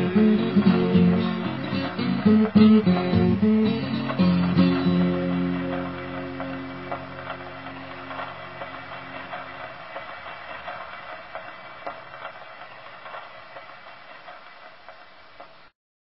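Solo fingerpicked guitar ending a ragtime blues: a last run of picked notes, then a final chord about four seconds in that rings and slowly fades until the sound cuts off just before the end.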